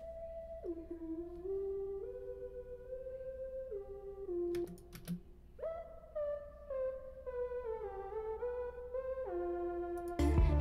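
Korg MS-10 single-oscillator analog synth playing a slow monophonic line, one held note at a time stepping up and down: a subtle layer that reinforces the song's guitar line. A few short clicks come about halfway through.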